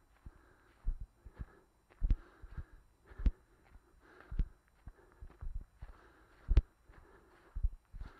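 Footsteps walking slowly over frosty grass: a heavy thud about once a second, with a soft rustle of grass between steps.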